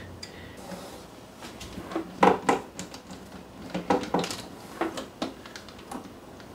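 A screwdriver and small metal parts clicking and clinking inside the open metal casing of a Gaggia Classic Evo Pro espresso machine: a few sharp, irregular clicks, the loudest a little over two seconds in.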